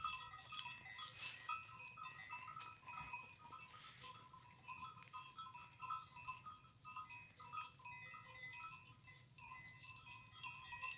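Bells on a herd of grazing goats clinking and jangling irregularly as the animals move, with one louder clang about a second in.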